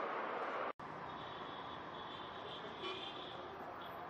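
Street background noise: a steady hum of traffic, with a faint thin high tone holding for about two seconds. The sound cuts out for an instant less than a second in.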